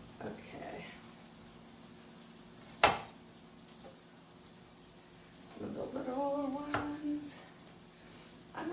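Chef's knife knocking on a cutting board as apple pieces are cut smaller: a few separate knocks, the loudest a little under three seconds in.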